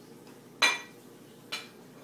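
Dishes or cutlery clinking twice, a loud ringing clink just over half a second in and a softer one about a second later.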